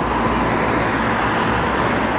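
Steady road traffic noise: cars passing on a busy city street.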